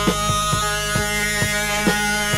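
1970s rock recording in an instrumental passage: a held chord over a steady drum beat, about two beats a second.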